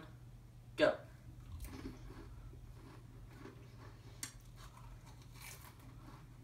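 Faint crunching and chewing of dry saltine crackers being eaten quickly, with one short sharp click about four seconds in.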